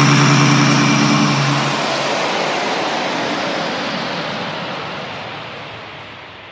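Electronic trap music: a held synth chord that stops about two seconds in, over a hiss of noise that steadily fades and grows duller.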